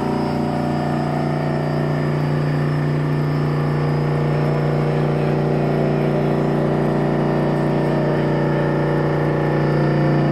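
Rousselet Robatel DRC50 stainless vertical-axis decanter centrifuge, belt-driven by an electric motor, running with a steady whir and hum.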